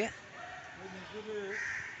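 Quiet open-air background: distant voices with a few harsh, rasping calls from a bird or animal near the end.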